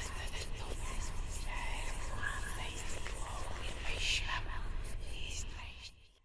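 Whispering voices over a steady low rumble, with faint scattered crackles, fading out at the very end.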